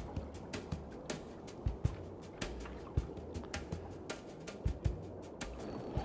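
A spinning reel being wound slowly to work a squid jig: faint, irregular light ticks and taps, several a second, over a low rumble of wind on the microphone.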